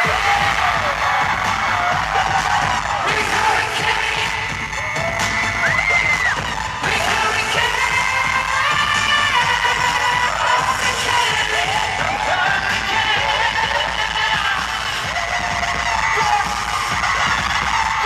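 Live K-pop song played loud over a concert PA, with a steady heavy beat and singing. High voices slide in and out over the music throughout, typical of fans screaming near the microphone.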